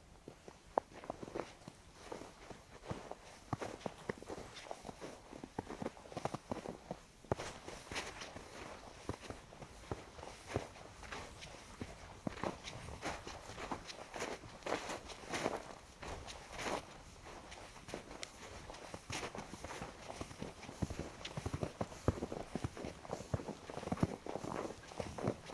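Footsteps crunching through fresh snow at a steady walking pace, a little louder from about seven seconds in.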